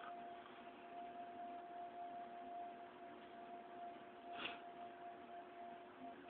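Near quiet: faint hiss with a thin, steady high whine and one brief soft noise about four and a half seconds in.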